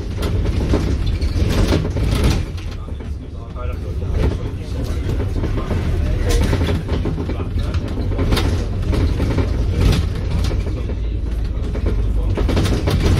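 Interior of a Volvo B5LH hybrid double-decker bus on the move: steady low drivetrain and road rumble with frequent sharp rattles and knocks from the body and fittings. The rumble dips briefly about three seconds in.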